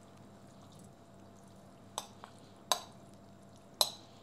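A metal spoon clinking against glass dishes as minced-meat filling is scooped and tipped into a glass baking dish: a few short, light clinks in the second half, over a quiet background.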